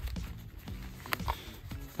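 Quiet background music with one sharp click a little past halfway, from hands handling a small zippered fabric pouch.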